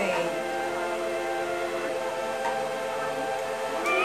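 Music: a chord of steady tones held unchanged, with a choir-like sound.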